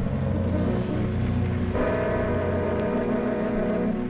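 Jazz quartet of accordion, guitar, flute and upright bass holding sustained chords over a low bass note at the close of the tune; a new held chord comes in just under two seconds in and rings on.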